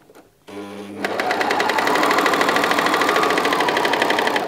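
Bernina overlocker (serger) sewing a flatlock stitch along a folded fabric hem. It starts about half a second in, spins up within half a second and then runs at a fast, even stitching rhythm.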